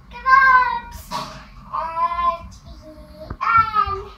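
A young child's high voice chanting in a sing-song way, three short phrases in a row.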